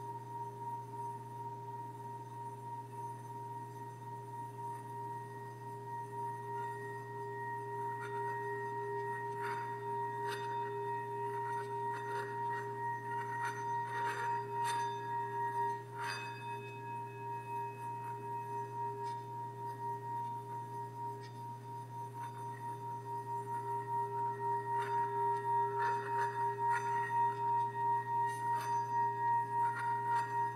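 A small handheld singing bowl rubbed around its rim with a wooden stick, singing a steady two-note ring with a wavering pulse. The ring swells louder in the last third, and light ticks come through in the middle and near the end.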